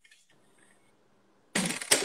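Near silence, then about a second and a half in a sudden burst of rustling and knocking as the phone is handled and turned around.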